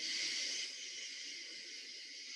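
Recorded katydid song: a steady, high-pitched raspy buzz made by the insect rubbing parts of its wings together, starting suddenly.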